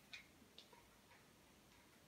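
Near silence with a few faint light clicks: fingers stirring folded paper slips in a plastic bowl.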